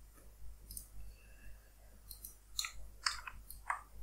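Faint, scattered clicks of a computer mouse, with a quick run of several clicks in the second half.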